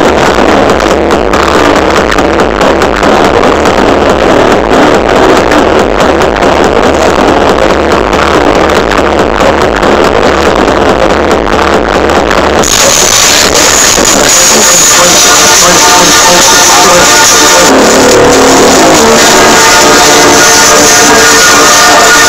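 Loud progressive trance played live over an outdoor sound system, with a pulsing kick and bassline. About thirteen seconds in, the bass drops out into a breakdown of held synth chords.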